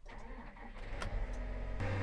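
John Deere 9R tractor's diesel engine starting, heard from inside the cab: the sound builds up as it cranks and catches, and settles into a steady low idle near the end.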